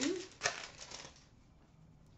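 Trading cards handled and flipped in the hands: a sharp snap about half a second in, then a few lighter clicks.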